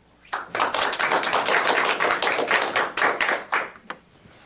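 Audience applauding, starting about a third of a second in and dying away with a last few claps near the end.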